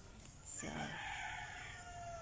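A rooster crowing once, a long held call that starts about half a second in and fades near the end.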